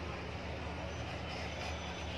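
A steady low hum under an even hiss of background noise, with no distinct event.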